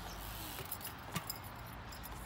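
A BMX bike rolling on concrete, with a few light clicks and rattles from the bike about midway through.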